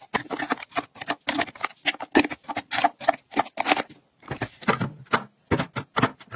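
Rapid clicking and clacking of plastic lipstick tubes, boxes and makeup cases being set down into clear acrylic organizers, with a brief sliding sound a little past the middle.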